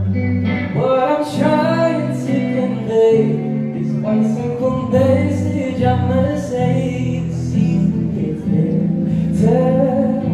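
Live music recorded from the audience: a male singer singing into the microphone over his own electric guitar, the melody moving in phrases above held lower notes.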